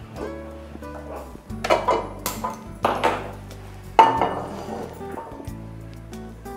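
Background music with held low notes, over which metal cookware clinks and knocks several times as pans and a steel bowl are handled at a gas stove; the loudest strike comes about four seconds in and rings briefly.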